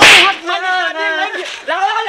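A single loud, sharp whip-like crack at the start, the sound of a slap or blow landing, followed by a high-pitched, wavering voice crying out.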